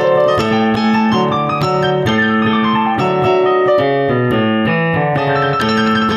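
Piano played with both hands: a steady stream of chords and melody notes over a recurring low note.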